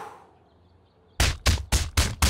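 A quick run of heavy thuds, about four a second, starting a little over a second in.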